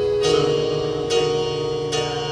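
Electric keyboard playing piano chords: three chords struck a little under a second apart, each left ringing into the next.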